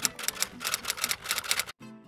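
Typewriter sound effect: a quick run of keystrokes, several a second, that stops shortly before the end, over background music.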